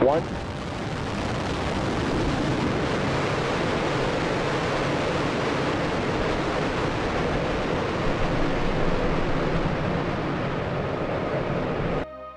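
SpaceX Super Heavy booster's 33 Raptor engines firing in a static fire test, heard from a distance as a steady, deep rushing rumble. It cuts off abruptly near the end.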